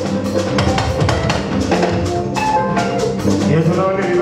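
Live fuji band music driven by a dense drum and percussion rhythm, with pitched melodic lines over it.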